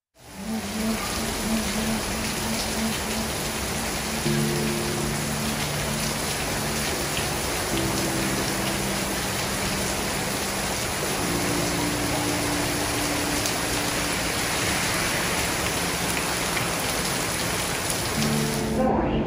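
Steady rain, even and unbroken, with slow held chords of background music over it that change about every three to four seconds.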